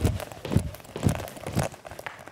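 Two-footed jump-rope skipping on a hard floor: feet landing and the rope striking the floor together, about twice a second in an even rhythm.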